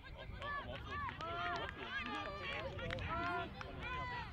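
Several voices of rugby players shouting and calling to each other across the pitch, overlapping and distant, over a low outdoor rumble.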